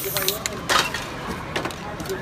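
Short hissing bursts from an aerosol spray paint can, the strongest just under a second in.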